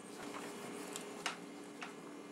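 Faint scraping and light ticking of a butter knife worked around the folded-over rim of an aluminium can lid pressed between two tuna cans, smoothing out its wrinkles. There are two sharper ticks in the second half.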